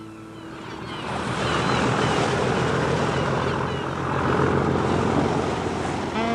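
A steady rushing noise that fades in over about the first second, with faint short high chirps over it.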